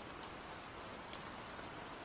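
Faint, steady rain falling on a surface, the rain ambience running under the narration.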